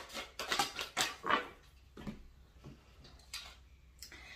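Tarot cards being shuffled and handled: a quick run of soft clicks and flicks in the first second and a half, then a few scattered ticks.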